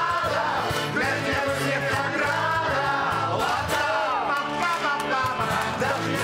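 Live song: singing over accordion and acoustic guitar, with a steady beat.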